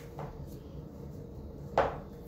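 A paper flash card set down on a table: one short, sharp slap near the end, with a small tick just after the start, over a faint low room hum.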